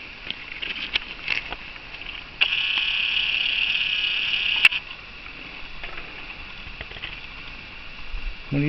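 Camcorder zoom motor whirring for about two seconds, starting suddenly and ending with a sharp click, over a steady faint chirring of night insects and a few small clicks.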